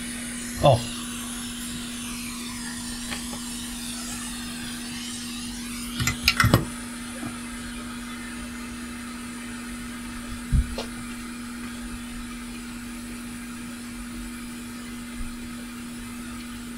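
Hot-air rework station blowing with a steady hum while a smart card connector is desoldered from a circuit board. A few sharp clicks come about six seconds in, and a low knock at about ten and a half seconds.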